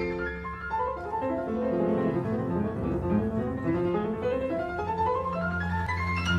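Classical piano playing a quick run of notes that steps downward and then climbs back up, over low sustained notes from the accompanying orchestra.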